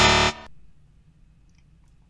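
A short musical sting: a loud chord right at the start that dies away within about half a second, leaving faint quiet for the rest.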